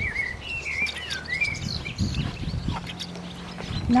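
Small songbird singing: a quick run of wavering, warbling notes over the first second and a half, then a few shorter chirps.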